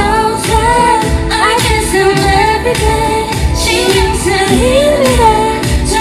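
Live K-pop concert performance: a woman singing into a microphone over a pop backing track with a steady beat.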